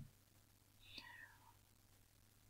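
Near silence: room tone, with one faint, brief whispered murmur from the speaker about a second in.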